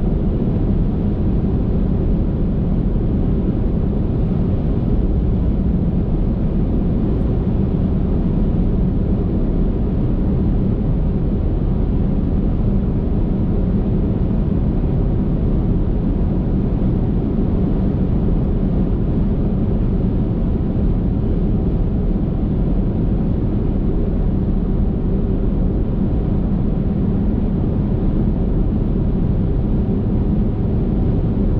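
Car driving at highway speed: a steady, low rumble of tyre and engine noise that stays even throughout.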